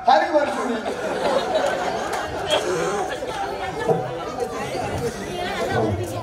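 Several voices talking at once, a jumble of overlapping chatter.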